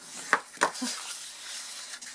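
A woman's short breathy laugh: two quick puffs of breath, then a faint voiced sound.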